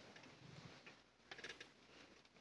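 Near silence in a hall, broken by a few faint clicks and small rustles, a short cluster of them about one and a half seconds in.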